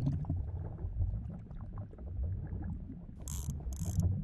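Underwater sound effects in a cartoon: a steady low rumble with faint, scattered mechanical clicking, and two short bursts of hiss near the end.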